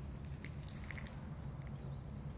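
A goat grazing, tearing and chewing grass, heard as a run of short crisp clicks and crunches.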